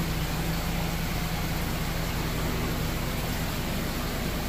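Steady hum of running aquarium pumps and filtration, with a broad, even hiss of moving water and two low steady hum tones.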